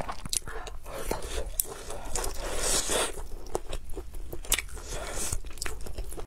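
Close-up eating sounds: biting into a piece of fried sausage and chewing it, with a steady run of short crunches and wet mouth clicks.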